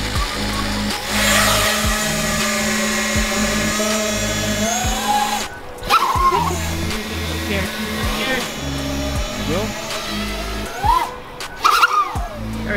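A 5-inch FPV quadcopter's brushless motors and propellers spinning up to take off about a second in, a high buzzing whine that rises and falls in pitch with the throttle. Background music plays under it.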